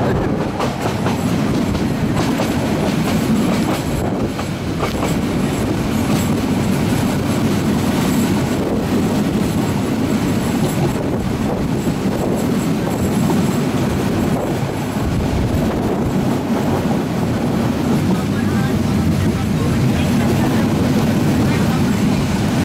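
Meter-gauge passenger train running along the track, heard from a carriage window: a steady rumble of wheels on rail with occasional clacks.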